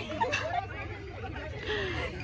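Background chatter of several people talking at once, indistinct and not close, over a steady low hum.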